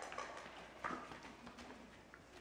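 Faint, uneven taps of a blue merle Australian shepherd's paws and claws on foam floor mats as it walks back toward a plastic tub.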